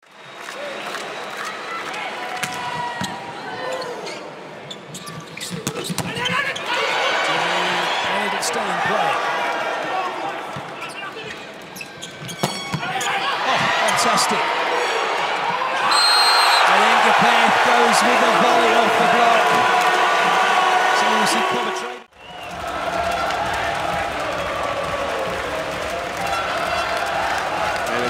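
Indoor volleyball match: the ball is bounced and struck in a rally over a dense arena crowd noise, which swells into loud cheering about halfway through.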